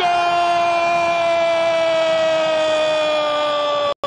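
A football commentator's drawn-out 'goooool' shout: one long held note sliding slowly down in pitch, cut off abruptly near the end.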